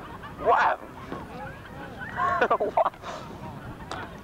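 Geese honking: a short burst of calls about half a second in, then a longer, louder run of honks around two to three seconds in.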